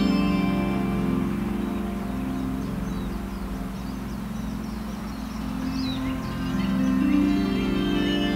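Soft, slow background music of sustained low chords that thin out in the middle and swell again near the end.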